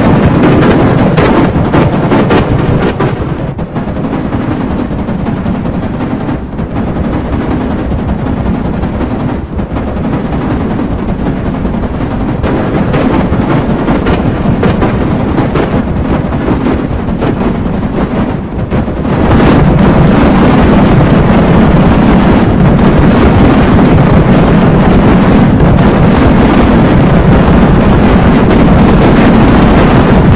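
Heavily distorted, clipped audio of a TV-logo clip run through a 'G Major 7' effect, reduced to a dense, harsh crackling roar with no clear tune or voice. It eases off somewhat a few seconds in, then comes back at full loudness a little past the middle.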